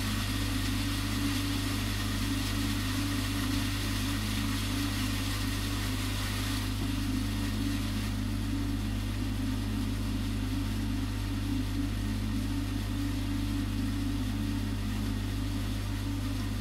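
Steady, unchanging machine hum with a hiss, like a motor or pump running.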